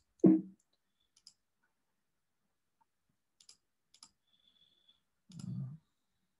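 A few faint, scattered computer clicks while someone works a laptop. A short low sound, louder than the clicks, comes about a quarter-second in, and a softer one comes shortly before the end.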